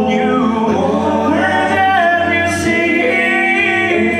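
Six-man a cappella group singing in close harmony into microphones, the voices holding chords together while the upper line bends in pitch.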